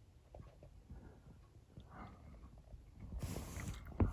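Faint background sound, then a brief rustling hiss near the end as the phone is swung round.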